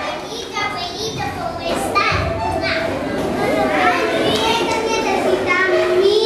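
Many children's voices chattering and calling out together, high-pitched and overlapping, with no single clear speaker.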